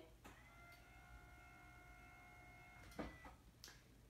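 Electric hospital bed's head-section motor running, a faint steady whine lasting about two and a half seconds, with a click as it starts and a louder click as it stops about three seconds in.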